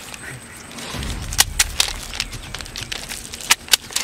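A few sharp slaps in two quick groups, three about a second and a half in and two more near the end, over a low rumble.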